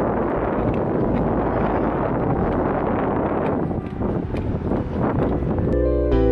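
Wind buffeting the microphone: a steady, rough rumbling noise. Music starts just before the end.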